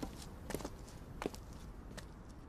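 A few faint footsteps, spaced irregularly.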